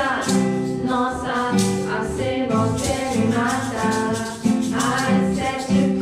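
Live acoustic jam: steel-string acoustic guitar and ukuleles strumming chords in a steady rhythm, with a woman singing the melody into a microphone.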